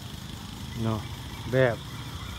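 Mostly a man talking in short phrases, with a low, steady hum of city street traffic underneath.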